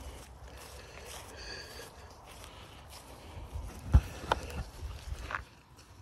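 Footsteps and rustling handling noise on a phone microphone, over a low rumble, with a sharp knock about four seconds in and a lighter one just after.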